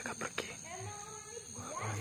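A person's low, indistinct voice, not clear words, with two sharp clicks in the first half-second. Behind it runs a steady high insect drone, typical of crickets at night.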